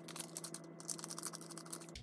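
A blind-bag toy packet crinkling and crackling in the hands as it is handled and opened, a dense run of small irregular crackles.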